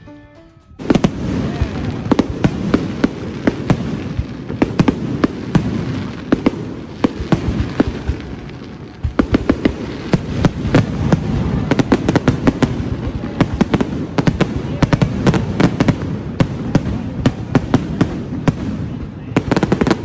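Aerial fireworks display: a dense run of bangs and crackles over a continuous rumble, starting about a second in. It eases briefly around the middle, then builds again.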